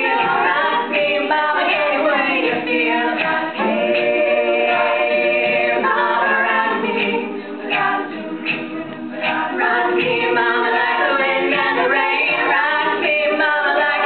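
All-female a cappella group singing live, a lead voice over close vocal harmony and backing voices, with no instruments. The sound drops softer for a moment a little past halfway, then comes back to full.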